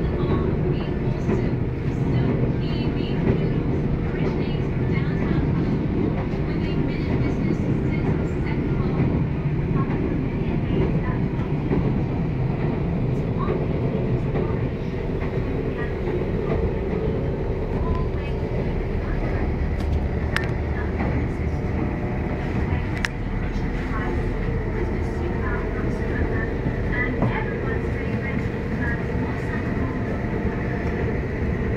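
Steady running noise of the Kuala Lumpur airport express train heard from inside the carriage at speed, a constant low rumble with no breaks.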